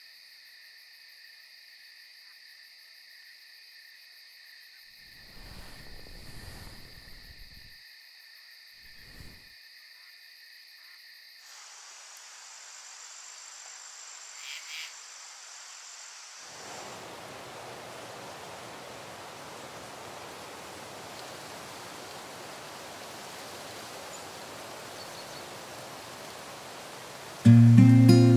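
Night insect chorus, a steady high-pitched chirring, with two short low rustles about five and nine seconds in. After about eleven seconds the ambience changes, and from about sixteen seconds a steady even hiss takes over. Strummed acoustic guitar music comes in right at the end.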